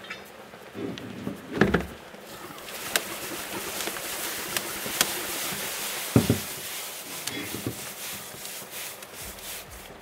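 Liquid nitrogen poured into a plastic tub, hissing and boiling off around a submerged rubber toy. The hiss swells a couple of seconds in and eases near the end, with a few sharp knocks along the way.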